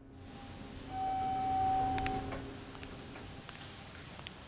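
A single high held tone lasting about a second and a half, over a low background hum, with a few sharp clicks.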